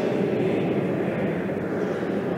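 Many voices of a congregation together in one sustained phrase, blurred into a dense wash by the echo of a large church.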